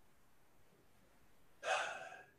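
Near silence, then about one and a half seconds in, a man's quick audible in-breath through the open mouth.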